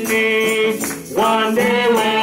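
A gospel song sung into microphones with amplified accompaniment, the voice holding long notes, with a short break about a second in. Hand percussion jingles in a steady beat behind it.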